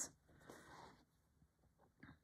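Near silence, with a faint soft rustle and a few tiny ticks from a needle and thread being drawn through cotton fabric in hand stitching.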